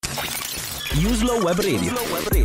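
Radio station jingle: a sudden crashing, shattering sound effect opens it, and from about a second in a melodic vocal line runs over music.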